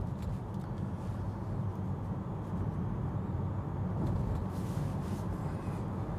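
Steady low road and tyre rumble inside the cabin of a Tesla Model 3, an electric car with no engine note, driving at town speed.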